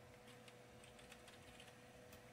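Faint computer keyboard typing: a few soft, scattered key clicks over a faint steady hum.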